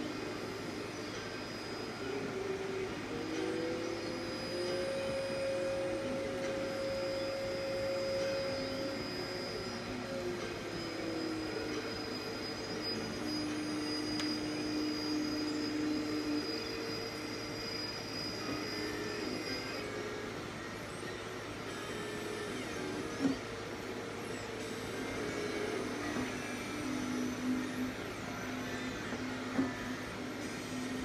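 Electronic keyboard sounding long sustained single notes, each held for several seconds before moving to a new pitch, over a steady noisy hum. There are two small clicks late on.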